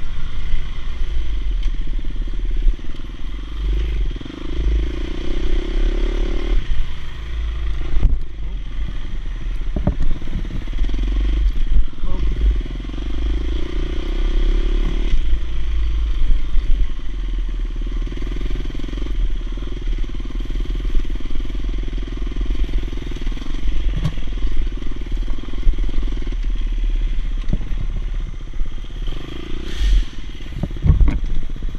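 Dirt bike engine heard from on board while riding a trail, the engine note swelling and easing every few seconds as the throttle is worked, under a heavy low rumble. A few sharp knocks and clatters come through as the bike goes over rough ground.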